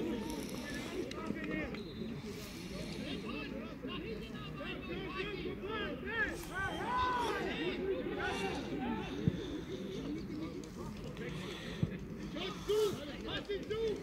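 Several voices of football players and sideline spectators calling and talking over one another across an open pitch, with a few short sharp knocks in the second half.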